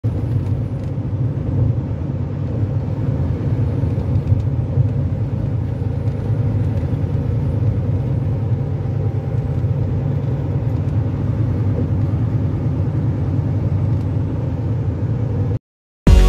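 Steady low rumble of a vehicle driving at highway speed, heard from inside the cabin: engine and tyre noise without change in pitch. It cuts off suddenly near the end.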